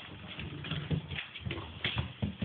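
Corgi puppy's claws clicking and paws scrabbling on a hardwood floor while it plays with a ball: a quick, irregular run of taps and knocks.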